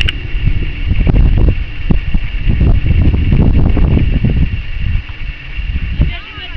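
Wind buffeting the microphone: a loud, fluctuating low rumble that eases off about five seconds in.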